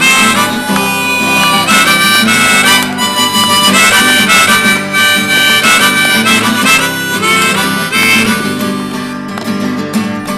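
Harmonica played in a neck rack over a strummed steel-string acoustic guitar: the instrumental intro to a folk song, with the harmonica out front.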